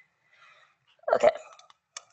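Speech only: a woman says a single short "okay" about a second in, with faint room noise around it and a brief click near the end.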